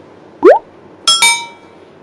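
A quick rising swoop, then a bright, glassy chime that rings out briefly: edited-in sound effects.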